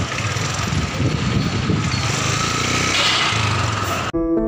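Riding noise from a moving two-wheeler in street traffic: the engine running steadily, with wind buffeting the microphone.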